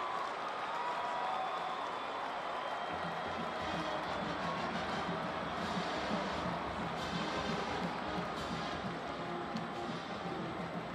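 Football stadium crowd noise with music playing over it. A lower, steadier part of the music comes in about three seconds in.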